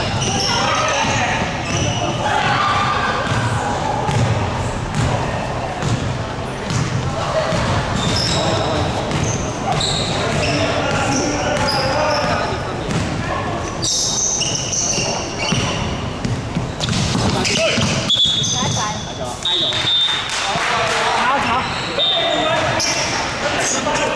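Basketball game sounds in a large echoing sports hall: a basketball bouncing on the wooden court, short high squeaks of sneakers, and players' indistinct shouts.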